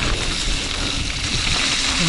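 Mountain bike rolling fast downhill through wet mud and slush, the tyres splashing and hissing over the soaked trail, with a steady rush of wind and trail rumble on the camera.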